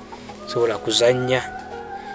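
A rooster crowing once, for about a second, starting about half a second in, over steady background music.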